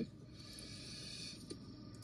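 Faint breathy hiss of a person exhaling vapor after a draw on a disposable vape, then a single small click about a second and a half in.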